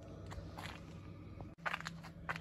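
A few quiet footsteps and faint rustles over a low steady hum, livelier near the end.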